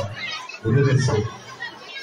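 Speech: a man talking into a handheld microphone, with a short phrase about half a second in and crowd chatter behind.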